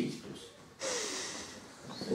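A person's single sudden breathy exhale about a second in, with a faintly falling pitch, fading out over most of a second.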